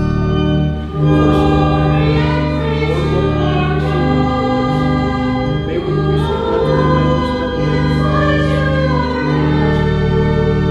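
Voices singing a hymn with sustained organ chords underneath, with a brief lull about a second in before the singing goes on.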